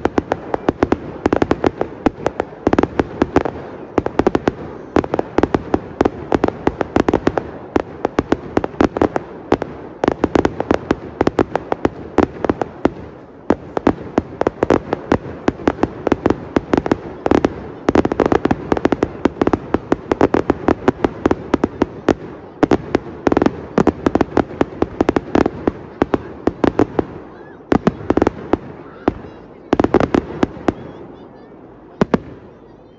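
Aerial fireworks display: a continuous rapid barrage of shell bursts and crackling, with many bangs a second, easing briefly about halfway through and again near the end.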